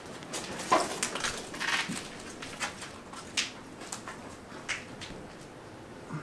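Short irregular creaks and clicks from a tiller-board rig as a rope pulls an old Hoyt TD-3 recurve bow back to full draw. The loudest comes about three-quarters of a second in.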